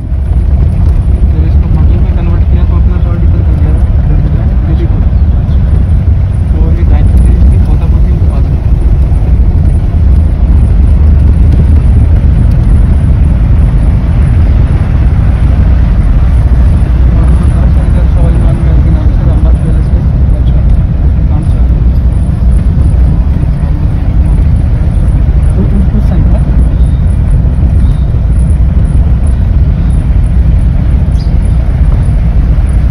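Inside a moving car: a loud, steady low rumble of road and engine noise.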